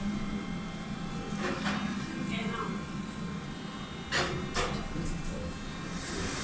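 Steady low hum inside a ThyssenKrupp passenger lift car, with faint voices coming and going over it.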